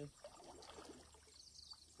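Faint sloshing of pond water as a man wades waist-deep through it, with a brief faint high chirp about one and a half seconds in.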